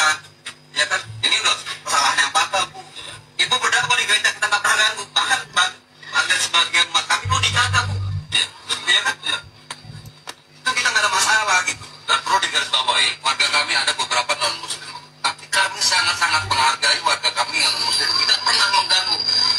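Speech from a video clip played on a smartphone's speaker, picked up again through a live video call, so it sounds thin and phone-like. The talk comes in runs of a few seconds with short breaks, over a steady low hum.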